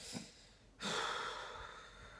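A woman's long sigh: one breathy exhale that starts about a second in and fades away.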